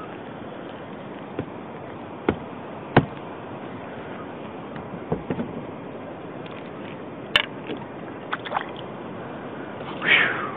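Kayak paddle and fishing gear knocking against a plastic kayak hull, with water sounds: a series of scattered knocks and taps, the sharpest about three seconds in, over a steady hiss.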